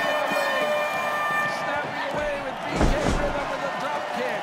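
A loud thud about three seconds in, a wrestler's body hitting the canvas of a pro wrestling ring. It sounds over steady arena crowd noise.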